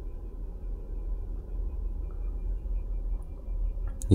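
A steady low background rumble with no distinct knocks or clicks.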